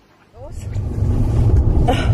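Loud, uneven low rumble inside a car cabin that starts abruptly about a third of a second in, after a near-quiet moment.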